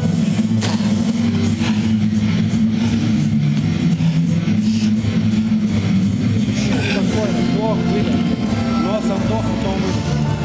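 Loud music with steady low sustained notes, mixed with the voices of the cornermen attending a boxer between rounds.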